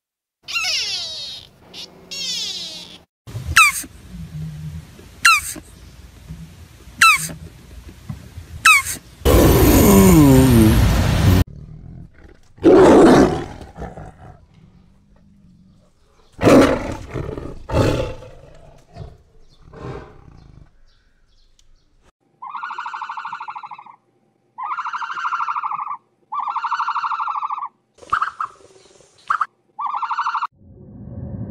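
A string of animal calls: two high calls at the start, then a young tiger roaring loudly for about two seconds, followed by shorter roars and growls. Near the end comes a run of five evenly spaced tones.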